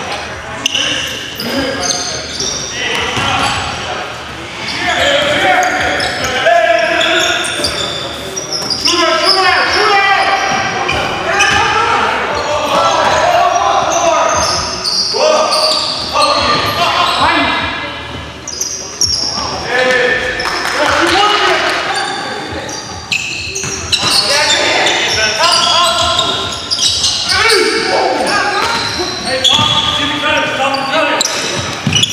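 Live basketball game sound in a gym: a basketball bouncing on the hardwood floor amid players' shouts, echoing in the large hall.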